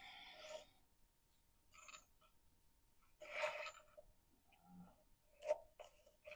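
Near silence: a few faint short hisses, the clearest about three seconds in, likely breaths, and a couple of soft clicks near the end as small wooden pieces are held and handled.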